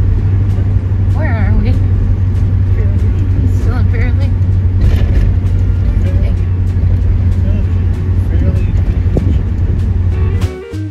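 Steady low rumble of a car driving, heard from inside the cabin, with faint voices talking about a second in and again around four seconds.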